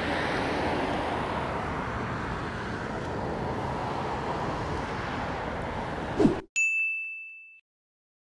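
Steady city riverside ambience, a hiss of traffic and wind, which cuts off after about six seconds. Then a bright chime sound effect dings once and fades over about a second.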